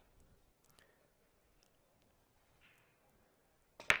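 Pool break shot near the end: one sharp hit as the cue drives the cue ball into the racked balls, followed by a brief clatter of balls. The hit is more of a thud than a whack, which is taken as the sign of a dull break where no ball is likely to drop.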